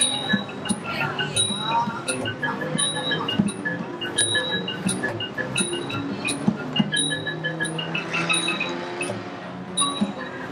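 Thai classical ensemble music accompanying the dancers: small ching hand cymbals clink about twice a second, keeping time over a melody of short pitched notes from a ranat xylophone.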